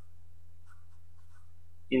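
Sharpie felt-tip marker writing on paper: a few faint short strokes, over a steady low hum.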